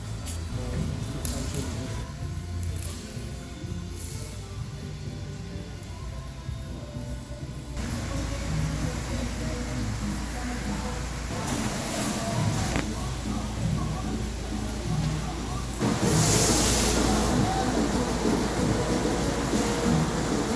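Indistinct voices and music over a steady low hum, the sound changing abruptly about eight seconds in and again about sixteen seconds in, where it grows louder.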